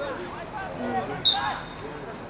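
Distant shouting voices of players across an outdoor football pitch, with one short, high whistle blast about a second in.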